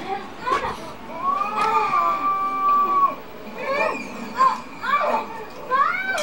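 A young child's high-pitched voice: one long drawn-out call, then several short rising calls and babble without clear words.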